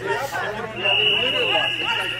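A referee's whistle blown once, a steady high tone lasting about a second from a little under a second in, signalling the restart of play, over men's voices talking on the field.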